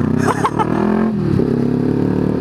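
Honda CB500X parallel-twin motorcycle, fitted with a full-system titanium exhaust, running under hard acceleration as heard from the rider's seat. Its steady engine note changes pitch abruptly once, about two-thirds of the way through.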